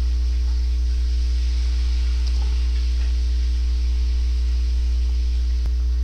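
Steady low electrical hum with a hiss in the recording line, unchanging throughout. A single faint click comes near the end.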